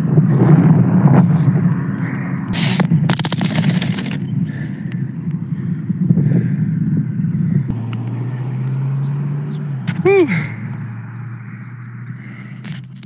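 Wind rumbling over a handheld phone's microphone while riding a bicycle on a road, with a quick burst of sharp rattles and knocks about three seconds in. Near the end a man's voice lets out a short "woo".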